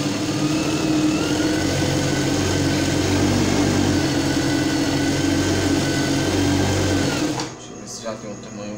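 Industrial lockstitch sewing machine running at a steady speed while stitching satin ribbon onto tulle, with a faint whine over the motor. It stops suddenly about seven seconds in.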